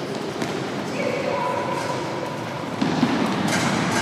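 Futsal match in a large, echoing sports hall: a ball being kicked and bouncing on the wooden floor, with a few thuds, the loudest about three seconds in, over indistinct shouts from players and spectators.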